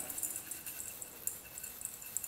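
Split moong dal poured from a bowl into a stainless-steel pot of raw rice: a faint, continuous run of small scattered ticks as the lentils land.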